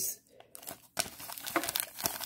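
Foil wrapper of a Bowman Draft baseball card pack crinkling as hands work it open, in a run of quick, irregular crackles from about halfway in.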